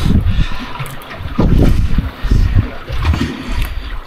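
Wind buffeting the microphone in irregular gusts, with water splashing against the hull of a small boat.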